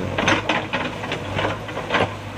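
Backhoe loader's diesel engine running steadily with a low hum while its bucket scrapes and digs through loose soil, giving a run of short, irregular crunching and scraping noises.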